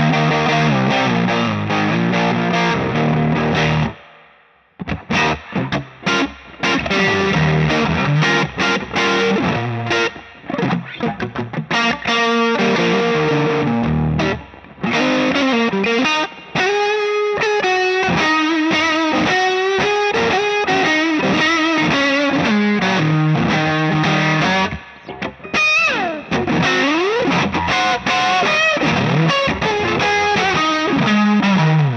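Suhr T-style electric guitar on its neck pickup, tuned to C standard, played through a Cornerstone Gladio overdrive pedal: thick driven chords, a brief stop about four seconds in, then choppy short stabs and single-note lead lines with bends, a quick slide near the end and chords again.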